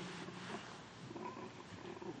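Faint room tone: a low, steady background hum with light noise and no distinct event.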